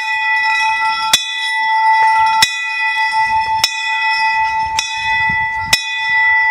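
Temple bell rung by hand, struck about once every second and a bit, five strikes, each keeping up a steady metallic ring that never dies away between strokes.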